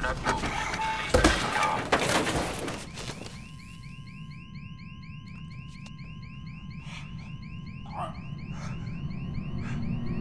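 Electronic alarm chirping in a rapid repeating pattern, about four rising chirps a second, with a steady electronic tone and a low hum beneath it. It starts about three seconds in, after a loud rushing noise with a couple of sharp knocks.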